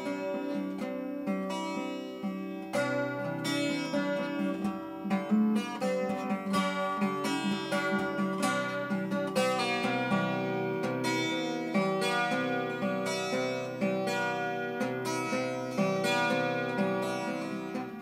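A 12-string acoustic guitar fingerpicked in an instrumental passage: a steady run of plucked notes ringing over a moving bass line.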